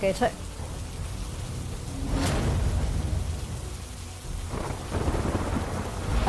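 Heavy rain falling on a street, with a low rumble of thunder that swells about two seconds in and again near the end.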